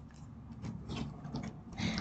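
Faint rustling and a few scattered light clicks of a tarot deck being handled.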